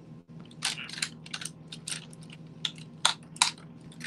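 Makeup products being handled: a quick, irregular run of small plastic clicks and rattles starting about half a second in and stopping near the end, over a low steady hum.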